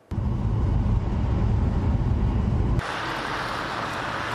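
Outdoor background noise from field footage: a loud low rumble that cuts off at about three seconds into a steadier, quieter hiss.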